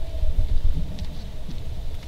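Low, uneven rumble of microphone handling noise, with a couple of faint clicks partway through.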